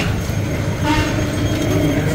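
Steady low rumble of wind and road noise on the microphone while riding on the back of an electric scooter through a street. A brief, faint higher tone comes about a second in.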